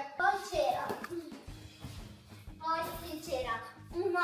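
A child's voice in two short bursts, one just after the start and one about three seconds in, over faint background music.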